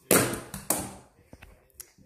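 A small plastic phone charger dropping to the floor: a loud knock just after the start, a second knock about half a second later, then a few faint ticks as it settles.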